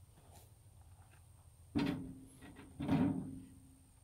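Two cut logs dropped one after the other into a small metal dump trailer, each landing with a thud and a short ringing from the trailer bed that fades over about a second.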